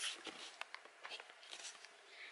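Faint, scattered small clicks and soft rustling: light handling noise close to the microphone in a small room.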